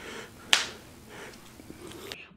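One sharp click about half a second in, over faint room noise.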